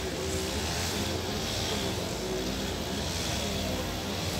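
Steady outdoor street ambience picked up by a phone microphone: a constant low rumble under an even hiss.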